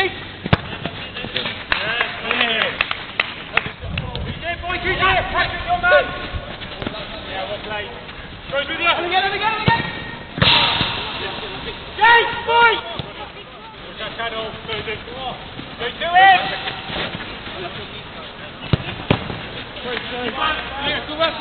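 Footballers shouting and calling to one another during a small-sided game on an outdoor pitch, with occasional thuds of the ball being kicked.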